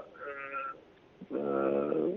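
A man's voice pausing mid-sentence: a short, faint vocal sound, then a drawn-out hesitation vowel like "aah", held on one steady pitch for most of a second.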